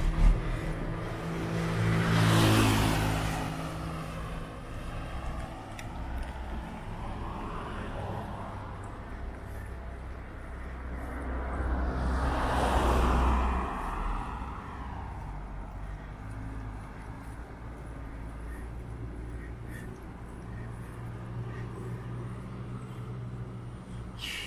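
Two motor vehicles passing close by on a road, the first about two seconds in and the second about twelve seconds in, each swelling and then fading away, with a low steady rumble between them.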